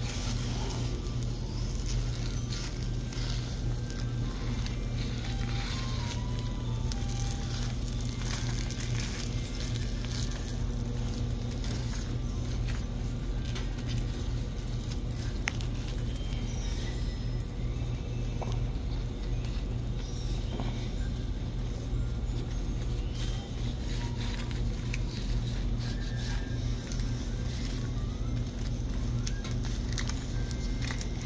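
A steady low hum with faint background music and occasional light clicks.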